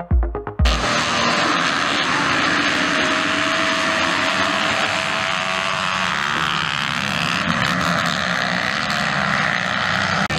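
A pack of motocross bikes running hard together as a race gets under way, a dense steady wall of engine noise. It cuts in abruptly about half a second in, after the end of an electronic music beat.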